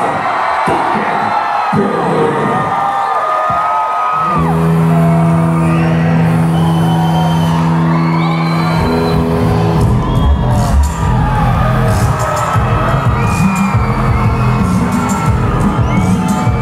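Rock concert crowd cheering and screaming between songs, with a few scattered thumps, heard on a camcorder's built-in mic. About four seconds in, a sustained low droning chord starts and changes pitch around nine seconds. Around ten seconds the full band comes in with heavy drums as the next song begins.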